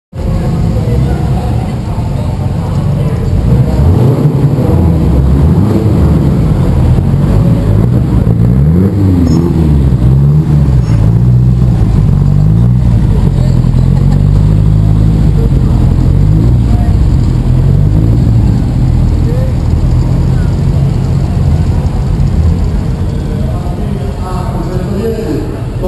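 Historic rally car engines running and being revved, their pitch rising and falling repeatedly, with crowd voices around them.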